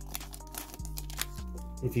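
Crinkling and short sharp rustles of a foil trading-card pack wrapper being opened and the cards pulled out, over steady background music.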